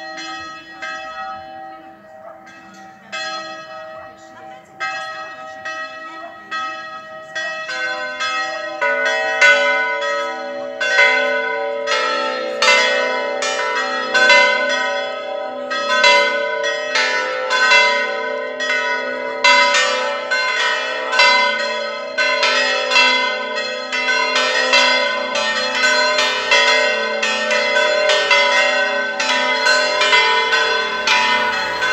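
The four bells of a church tower ringing a full peal. At first a single bell strikes alone, about every second and a half. From about eight seconds in the other bells join, and the strokes become dense and overlapping as all four ring together.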